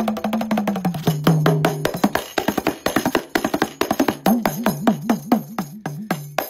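Kanjira, the South Indian lizard-skin frame drum, played by hand in fast, dense rolls of finger strikes. Its low tone bends downward about a second in and wavers up and down near the end as the skin is pressed.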